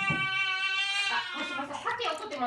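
A newborn baby, about a week old, crying: one long wail held at a steady pitch that breaks off a little past a second in, followed by shorter, rougher cries.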